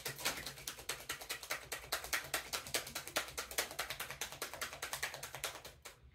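Tarot deck being shuffled by hand: a rapid, even run of soft card clicks, many a second, that stops just before the end.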